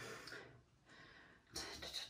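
Faint breathing of a woman winded from exercise: two soft exhales, one at the start and a slightly louder one near the end.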